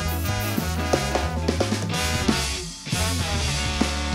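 Live ska band playing an instrumental passage: drum kit with snare and bass drum driving over bass guitar and horns, the band briefly dropping out about two and a half seconds in before coming back in.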